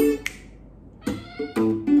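Blues phrases played on an electric guitar through a small amplifier, with a cat meowing along. The guitar notes stop about a quarter second in and pick up again about a second in.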